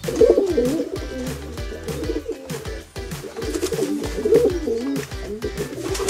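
Pigeons cooing in repeated warbling calls, loudest at the start and again about four seconds in, over background music with a steady beat.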